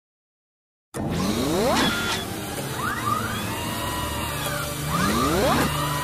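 Intro title music and sound effects: after about a second of silence, a series of rising sweeping tones and arching glides over a low steady drone.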